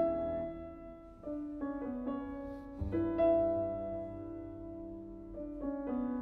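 Solo grand piano played slowly and softly: sustained chords and single notes that ring and fade, with a new chord every second or so and a fuller, louder chord about three seconds in.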